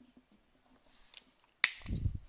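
Marker writing on a whiteboard: faint short strokes, then a sharp tap about a second and a half in, followed by a dull knock near the end.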